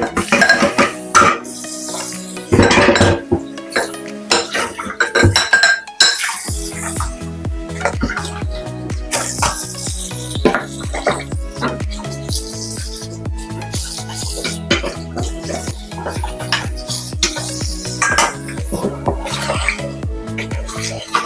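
Dishes and pots clinking and knocking against each other and the stainless steel sink during hand washing-up. Background music plays under it, with a steady bass beat coming in about six seconds in.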